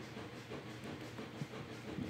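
Steady low background hum with hiss, with one soft thump about one and a half seconds in.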